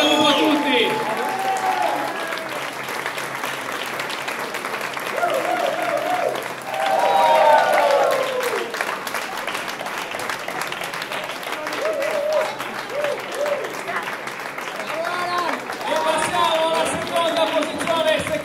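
A crowd applauding with steady clapping, with voices calling out over it at times.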